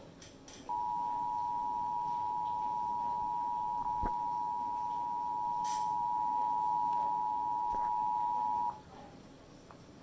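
Emergency Alert System attention signal: two steady tones sounded together, held for about eight seconds and then cut off sharply. It heralds the spoken severe thunderstorm watch message, played through a laptop speaker.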